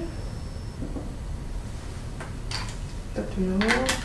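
A few light clicks and knocks from a paper milk carton and plastic cups being handled and set down on a tabletop, about two and a half seconds in and again near the end.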